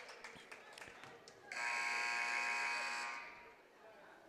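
Arena scoreboard buzzer sounding one steady, harsh blast of nearly two seconds, starting about a second and a half in and fading out: the horn that ends a timeout.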